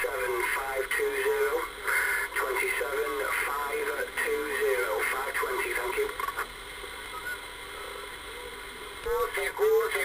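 A radio station's voice received in upper sideband through an HR2510 10-metre transceiver's speaker: narrow, thin speech over steady band hiss. The voice drops out for about two and a half seconds near the end, leaving only hiss, then returns.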